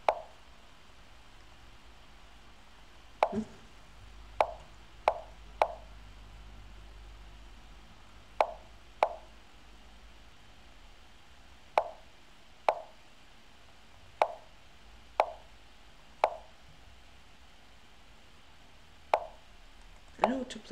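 Lichess move sound effects: short wooden clacks of chess pieces being set down on the board, about thirteen of them at uneven intervals, sometimes two close together.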